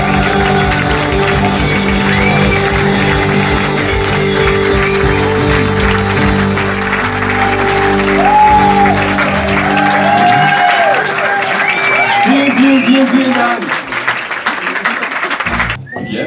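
Audience applauding and cheering at the end of a live band number, with the acoustic guitar and electric bass's last chord ringing under the clapping. The chord dies away about ten seconds in, leaving clapping and whoops, and the sound cuts off abruptly just before the end.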